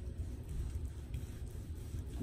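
Chef's knife slicing through cooked steak on a wooden cutting board: quiet cutting with one light tap about a second in, over a low steady rumble.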